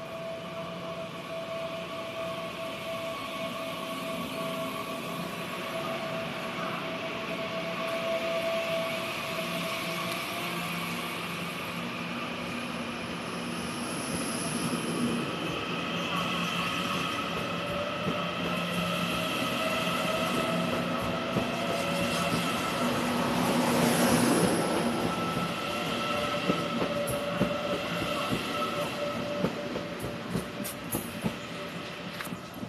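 Taiwan Railway TEMU2000 Puyuma tilting electric multiple unit moving slowly past close by: steady whining tones and wheel squeal over a rolling noise, growing louder with a surge about 24 seconds in, then a run of sharp clicks from the wheels over rail joints near the end.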